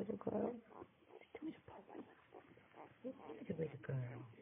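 Week-old Doberman puppies making short, irregular grunts and squeaks.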